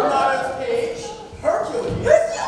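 An actor's voice on stage, echoing in a large hall, in two stretches with a short break about a second and a half in.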